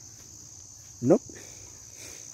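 Crickets chirring steadily in a high, unbroken drone.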